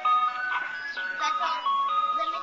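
Ice cream truck's loudspeaker playing its jingle: a simple electronic melody of single notes stepping from pitch to pitch.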